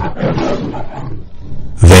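A monster roar sound effect dying away, rough and unevenly fading until it trails off near the end.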